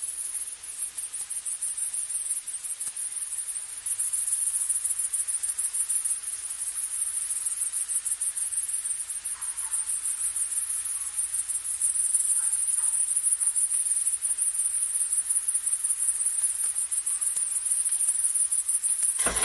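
A chorus of insects chirring in a meadow: a high-pitched, fast trill that runs on without a break and grows a little louder about four seconds in and again near the middle.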